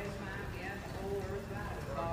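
Hoofbeats of several horses cantering on soft dirt arena footing, under indistinct talking voices.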